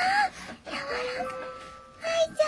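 A brief high, rising squeal, then a soft, long, drawn-out vocal note from a baby cooing.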